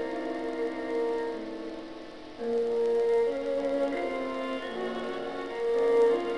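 A recording of classical chamber music played back from tape: strings hold sustained chords that shift every second or so, growing louder about two and a half seconds in.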